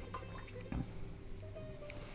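Cooking oil poured from a small glass measure into a cooking pot: a faint trickle and drip of liquid.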